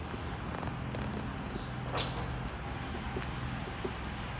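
Quiet outdoor background: a steady low hum with faint ticks and rustles, and one sharp click about two seconds in.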